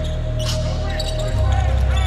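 Bass-heavy music with a deep beat in a basketball arena, its bass note shifting about a second and a half in, over a basketball being dribbled on the hardwood court.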